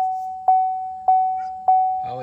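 2015 Chevy Silverado's dashboard warning chime, a single-pitched ding repeating about every 0.6 seconds, each ding fading before the next.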